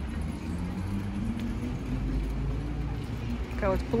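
Outdoor street ambience: a steady low rumble with a faint droning tone through the middle, fitting distant traffic. A voice speaks a single word near the end.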